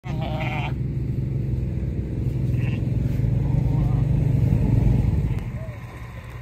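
A lamb bleats at the start, with another short sheep call later, over a steady low engine rumble that grows louder and then fades away about five seconds in.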